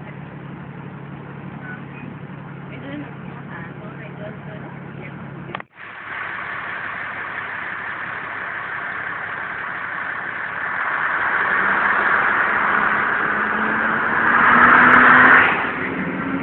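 A steady low hum for the first few seconds, then, after an abrupt cut, a road vehicle driving in city traffic heard from on board: engine and road noise that grow louder, with the engine note slowly rising as it speeds up, loudest shortly before the end.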